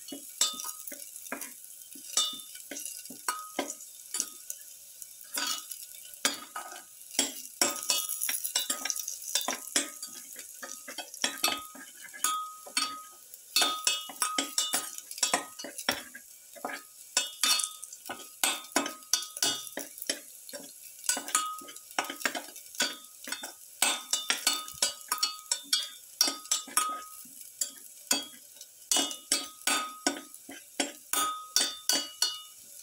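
Garlic cloves being stirred as they sauté in oil in a stainless steel pan: a light, steady sizzle under frequent irregular scrapes and clinks of the stirrer against the metal, some of which ring briefly.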